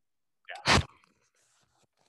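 A single short, sharp vocal burst from a person, under half a second long, about half a second in, led by a brief breathy onset.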